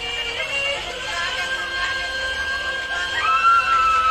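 Live concert audio: a singer holding long notes over a band, with fans in the crowd shouting.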